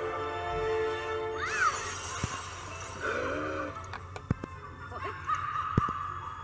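Background music stops about a second and a half in and gives way to a noisy stretch with animal-like squealing calls that bend up and down, broken by a few sharp clicks or knocks. A steady high tone comes in near the end.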